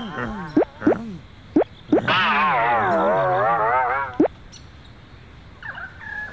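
Comic cartoon-style sound effects for a car tyre being pressed: a few quick springy boings, then a long wobbling warble that sags slightly in pitch for about two seconds before cutting off.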